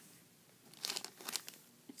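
Plastic bag of soft-plastic fishing baits crinkling as it is handled, in a few short faint rustles about a second in.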